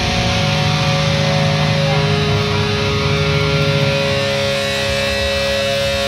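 Electric guitar sustaining a chord through a loud amplifier, several steady notes held and ringing, over a low amp rumble that thins out about two-thirds of the way in.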